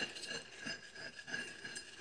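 Spatula scraping wet, settled pigment across the bottom of a glass dish, with faint small clinks against the glass.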